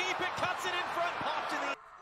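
Football match broadcast audio: a voice over dense crowd noise, cutting off suddenly near the end.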